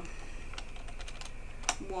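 Computer keyboard typing: a few light keystrokes, then one sharper key click near the end.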